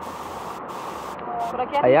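River water flowing steadily over rocks, a continuous even rushing. A woman starts speaking near the end.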